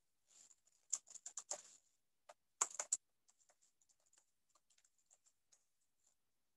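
Quiet typing on a computer keyboard: irregular key taps, with two quick runs of louder keystrokes in the first three seconds and lighter, scattered taps after.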